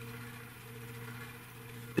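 Steady low background hum over faint hiss, with no other event.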